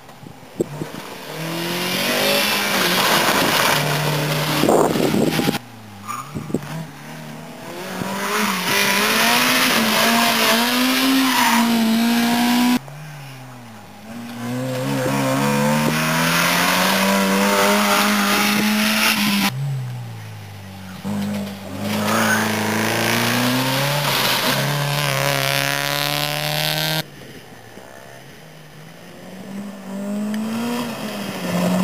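Rally cars at full throttle on a gravel stage, one after another: each engine revs up, drops back at a gear change and climbs again as the car goes past. There are about four loud passes, each breaking off suddenly, and a quieter approach near the end.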